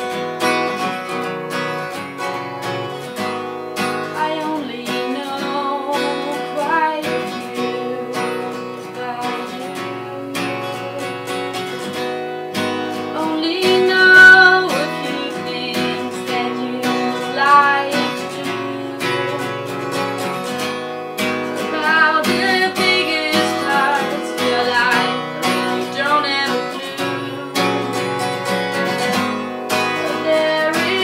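Acoustic guitar strummed in a steady rhythm, with a woman singing over it for much of the time.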